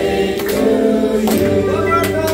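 Several voices singing together in held notes over music with a steady beat.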